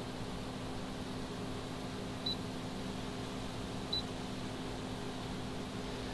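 Two short, high beeps about a second and a half apart from the touch controls of a Safari 1800-watt two-burner induction cooktop as it is switched on, over a steady low hum.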